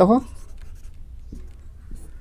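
Marker pen writing on a whiteboard: faint strokes, with a couple of light ticks in the second half.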